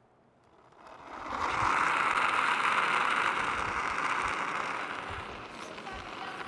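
Curling brooms sweeping the ice in front of a delivered curling stone: a steady brushing noise that starts about a second in, is loudest near the middle and eases off toward the end.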